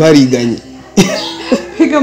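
People talking, with a sudden sharp vocal burst, like a cough, about a second in and a shorter one near the end.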